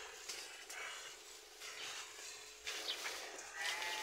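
Sheep and goats in a pen, with rustling and scuffling noise and one bleat near the end.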